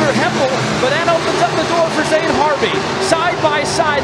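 A pack of dirt-track Pro Mod race cars running hard through a turn, several engines overlapping with their pitch rising and falling as the drivers work the throttle.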